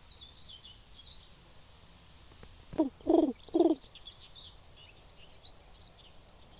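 Faint chirping of small songbirds throughout, broken about halfway through by three short, low, hooting sounds in quick succession, much louder than the birdsong.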